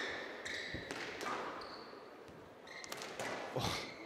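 A squash rally: a squash ball struck by rackets and hitting the court walls, heard as a handful of sharp knocks spaced irregularly. A short high squeak comes near the middle.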